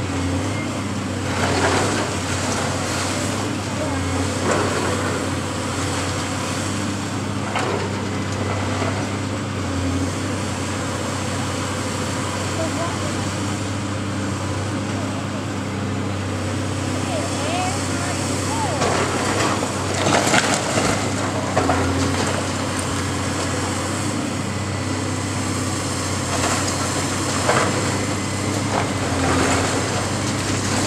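High-reach demolition excavator's diesel engine running steadily as its boom works into a brick building, with intermittent crashes and clatter of falling brick and debris, the biggest about twenty seconds in.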